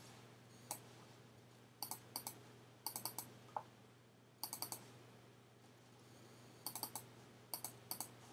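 Computer mouse clicking in quick bunches of two to four clicks, about eight bunches spread through, with a faint steady hum underneath.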